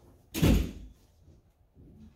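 A single loud, heavy thump about a third of a second in, dying away within half a second, then quiet room tone.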